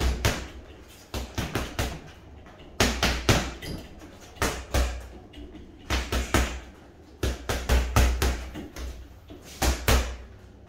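Boxing gloves punching a foam-filled Adidas Body Snatcher wrecking-ball bag. The strikes come in quick combinations of two to four, each a sharp slap with a dull thud, with short pauses between combinations.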